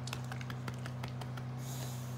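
A steady low electrical hum, with faint scattered ticks and rustling from hands on the dog's fur, and a short hiss near the end.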